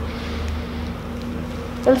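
A steady low buzzing hum, its deepest part dropping away about two thirds of a second in.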